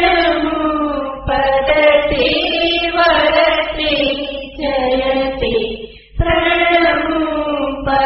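Voices chanting a Jain devotional chant in long held phrases with slowly sliding pitch, broken by a short pause about six seconds in.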